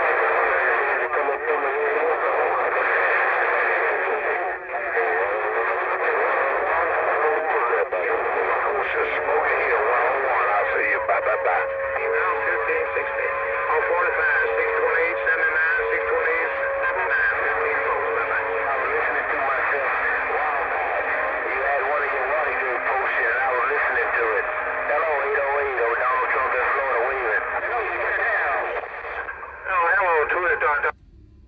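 Cobra 148 GTL CB radio's speaker carrying distant stations whose voices come through garbled and unintelligible, in thin band-limited radio audio. A steady whistle tone sits under the voices for several seconds midway.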